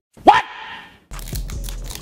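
A man's voice giving one short, loud cry that sweeps sharply upward in pitch, set off by abrupt dead silence before it, and trailing into a brief hiss.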